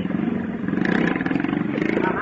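Small motorcycle engine revving as the bike pulls away, growing louder less than a second in.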